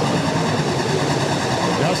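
A pack of USRA stock cars racing on a dirt oval, their engines running together in a steady, continuous drone with the pitch wavering as cars go through the turn.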